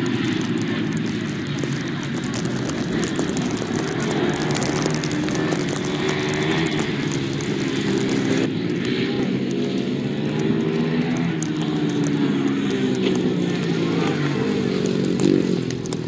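Several ice speedway motorcycles racing, their single-cylinder engines revving hard, the pitch rising and falling as they run the turns and pass one another.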